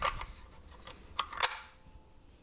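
A small wooden compartment cover, held on with magnets, clicking into place over the tuning key on the back of a homemade ukulele: a few sharp clicks, the loudest two close together just past the middle.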